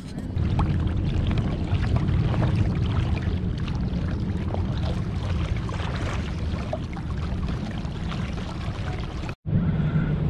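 Water gurgling and splashing against the plastic hull of a Hobie Outback kayak under way, over a steady low rumble. The sound cuts out briefly near the end.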